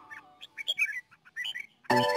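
A few quick, short chirps from a caged red-whiskered bulbul, in a gap in background music that comes back near the end.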